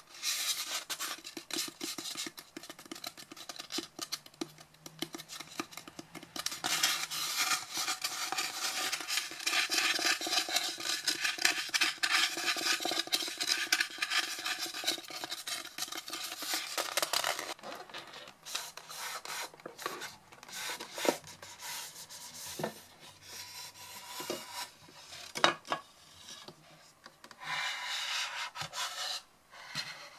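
Fingernails and fingertips scratching and rubbing across a polystyrene foam packing block: a dense rasping, thickest for about ten seconds in the middle, then thinning to scattered taps and scrapes.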